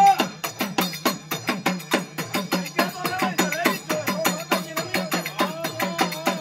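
Traditional devotional drumming: a drum struck in a rapid, even beat of about five strikes a second, with a wavering melody line over it in the second half.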